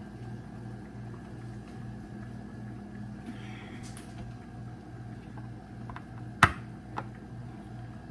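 Small glass diffuser bottles handled on a countertop: one sharp click about six seconds in and a lighter tick just after. Under it runs a low hum that pulses about three times a second.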